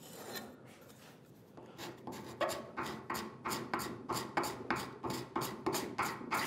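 Quick repeated strokes of a hand-held edge tool scraping and smoothing wood, about three a second, starting a couple of seconds in after a near-quiet start. It is taking a little more off the curved midsection of a small wooden saw holder.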